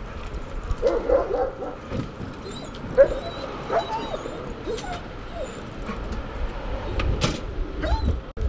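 German shepherd police dog giving a string of short whines and yelps. A car's low rumble swells near the end.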